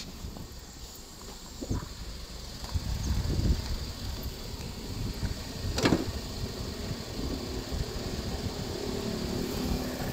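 A 2013 car's engine idling, a low steady rumble, running smooth and quiet, with a sharp knock about six seconds in.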